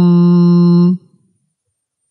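A man's voice holding the nasal 'm' of 'ʿābidum' as one steady hummed note, the ghunnah of Quranic recitation, which cuts off about a second in.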